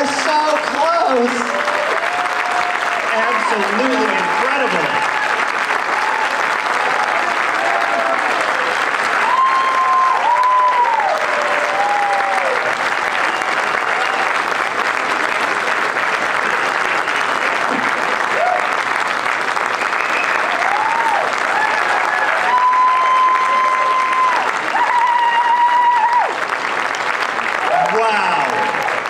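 Audience applauding steadily for the whole stretch, with voices calling out over the clapping now and then, strongest about ten seconds in and again near the end.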